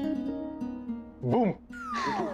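Background music from a TV serial's score, with steady held tones, then a short rising-and-falling voice-like sound about a second and a quarter in and a falling glide starting near the end.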